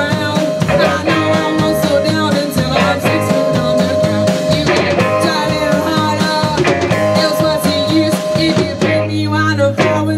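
Live 1960s-style girl-group beat band playing a rock number: electric guitars and a drum kit keeping a steady driving beat. The band thins out about a second before the end.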